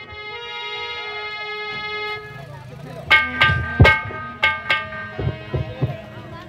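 Live folk stage music: a held note with many overtones for about two seconds, then a run of sharp dholak strokes with ringing tones, about three a second, from about three seconds in.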